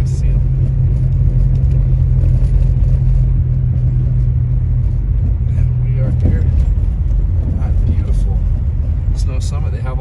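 Steady low rumble of a car's engine and tyres heard from inside the cabin while driving on a snowy road. The low hum in the drone changes and drops away about six seconds in.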